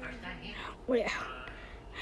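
Speech only: quiet talk and a short "yeah" about a second in.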